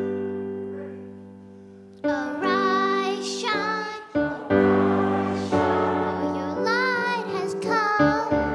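Piano chord dying away, then a child's voice singing into a microphone over piano accompaniment from about two seconds in, in a call-and-response children's anthem.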